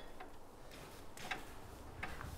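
A few faint, irregular clicks, about three in two seconds, over quiet background noise.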